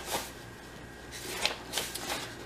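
Pages of a book rustling as they are handled and turned: a few short, soft rustles.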